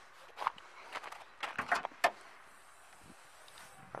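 Hood of a Renault Logan 2 being unlatched and raised: a few short, sharp clicks and knocks from the hood catch and lid, the sharpest about two seconds in.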